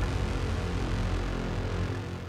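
A race car's engine running steadily at idle, heard from inside its caged cabin.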